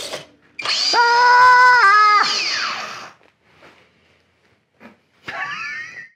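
Small brushless electric motor of an FT Tiny Tutor foam model plane, run up from the transmitter with no propeller fitted: a steady high whine that steps down in pitch and then winds down over about a second. A short burst of a person laughing comes near the end.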